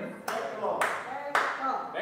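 Three sharp hand claps about half a second apart, with faint voices in the room between them.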